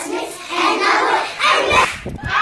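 A class of children's voices answering together in a loud unison chant, the reply to a teacher's "good morning class". It breaks off abruptly near the end.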